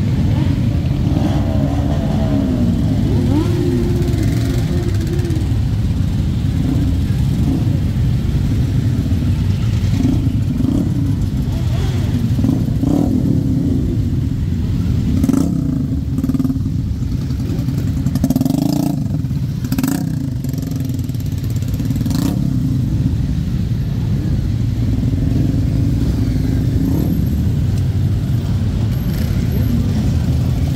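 A dense stream of motorcycles riding past, many engines running at once and revving up and down, with a handful of short sharp sounds in the middle.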